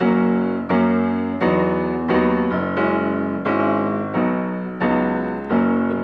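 Grand piano played: a steady run of about nine chords struck roughly three-quarters of a second apart, each ringing on into the next, climbing in an ascending pattern in the key of F sharp.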